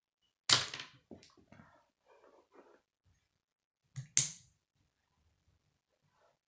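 Plastic K'nex pieces snapping together: a loud sharp snap about half a second in and a quick double snap about four seconds in, with lighter clicks and rattles of the parts being handled between.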